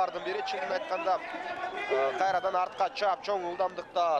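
A man commentating on a sports broadcast, talking quickly and without a break.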